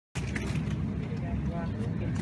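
Supermarket ambience: a low, steady hum with faint voices in the background.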